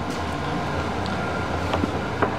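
A steady low background rumble with a few faint clicks and taps.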